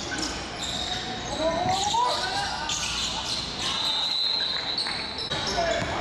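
Basketball dribbled on a hardwood gym floor during live play, with short squeaks of sneakers on the court and voices echoing in a large gym.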